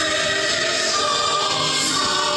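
A choir singing an Orthodox church chant in long held notes.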